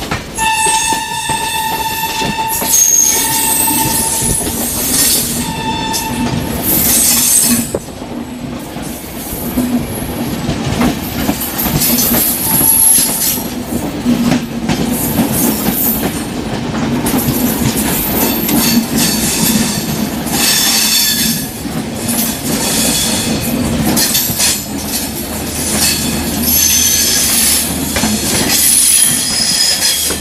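Two express trains passing each other at speed on adjacent tracks, heard at close range from an open coach door: a loud, steady rush of wheels and air from the passing Shatabdi's LHB coaches, with rail clatter and high, thin squeals from the wheels. In the first six seconds a train horn sounds in several short blasts.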